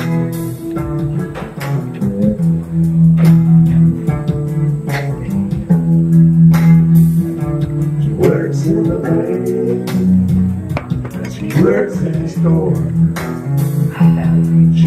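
Live solo performance: an electric guitar played through a PA, strummed chords ringing steadily, with a man singing into the microphone in places.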